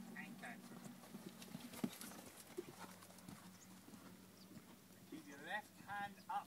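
Faint hoofbeats of a ridden horse moving on an arena surface, over a steady low hum.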